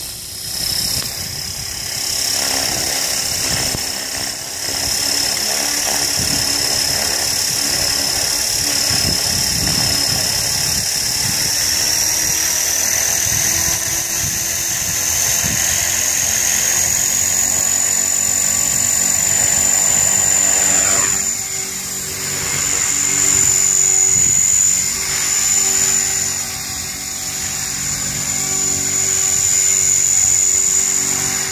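HK-450 electric RC helicopter's motor and main rotor spinning on the ground: a steady high-pitched whine that rises in pitch about halfway through and then holds, over the whirr of the rotor blades.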